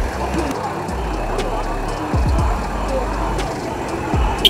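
Crowd chatter mixed with music that has deep falling bass notes recurring every second or two, over a steady low rumble.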